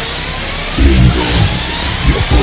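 Electronic dance music from an EBM/industrial mix: a rising noise sweep with a rough, engine-like drone, then heavy distorted bass and kick hits come in less than a second in.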